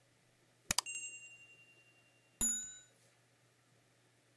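Animated subscribe-button sound effects. A quick double mouse click comes with a bright ding that rings out and fades, and about two and a half seconds in a second bell-like notification chime sounds and dies away.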